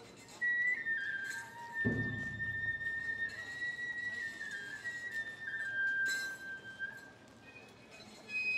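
Matsuri-bayashi bamboo flute (shinobue) playing a slow melody of long, high notes that step between a few pitches, with one deep drum stroke about two seconds in.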